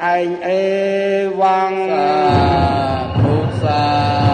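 A Buddhist monk's male voice chanting in long, drawn-out held notes, the close of a Khmer Dhamma recitation. About two seconds in, instrumental music with a low beat comes in.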